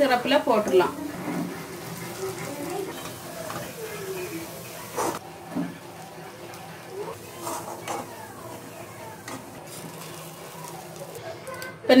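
Hot oil sizzling steadily as gulab jamun balls deep-fry on a low flame, with a single sharp tap about five seconds in.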